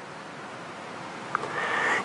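A pause in a man's sermon over a lectern microphone: steady room hiss, a small click, then a breath drawn in near the end just before he speaks again.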